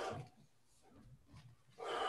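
A person's forceful, breathy exhalations during whole-body movement: one dying away just after the start, another beginning near the end, with quieter breathing between.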